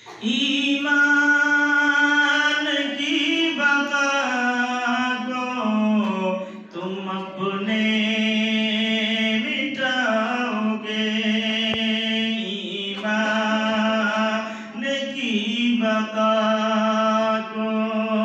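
A man's solo voice chanting an Urdu nazm without instruments, in long held notes that bend in pitch, with a brief break between lines about every four or five seconds.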